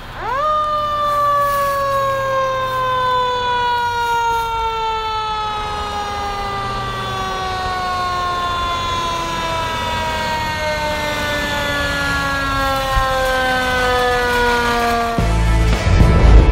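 Fire engine siren winding up quickly once and then slowly winding down for about fifteen seconds, a single falling wail. Near the end it is cut off by a loud burst of outro music.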